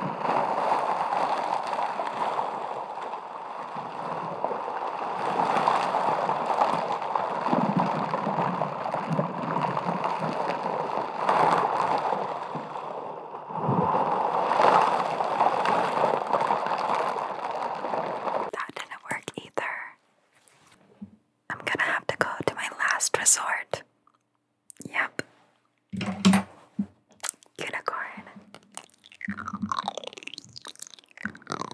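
Close-miked ASMR sounds: a dense, steady scratchy hiss that swells and dips for about the first two-thirds. It then breaks into short, sharp crackles and clicks with silent gaps between them.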